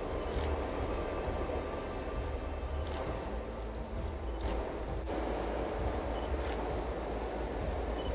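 Steady rushing of a snowmelt-fed waterfall and the stream tumbling over rocks below it, with a low rumble underneath.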